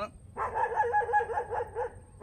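A dog barking in a quick run of barks, starting about a third of a second in and lasting about a second and a half.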